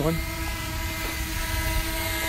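DJI Mini 2 drone hovering close by: a steady propeller hum of several held tones, over a low rumble of wind on the microphone.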